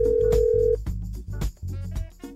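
Telephone ringing as one loud, steady electronic tone that cuts off under a second in, over background music with a steady beat.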